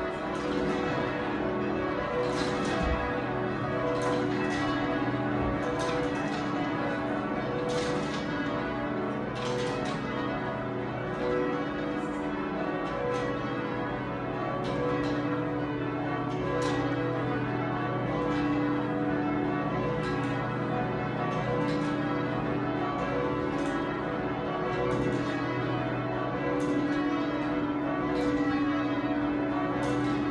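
A ring of twelve church bells, cast by John Taylor with a tenor of about 50 cwt in B, rung full-circle by hand in peal. The strokes follow one another in an unbroken stream, their tones ringing on and overlapping.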